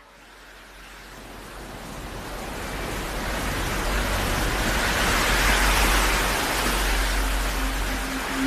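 Electronic intro effect through a concert sound system: a wash of noise that swells steadily over about five seconds and then eases slightly, over a steady low bass drone.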